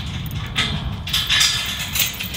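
Wind noise buffeting the microphone outdoors, with a short burst of hiss a little over a second in.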